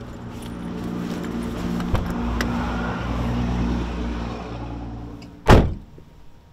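Car door shut with a single loud slam about five and a half seconds in, after a few light clicks over a steady low hum.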